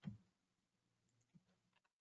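Near silence, with a faint click from a computer right at the start and a fainter one later on.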